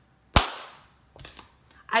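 One sharp, loud hand slap, with a short decaying ring after it, followed by a few faint small knocks.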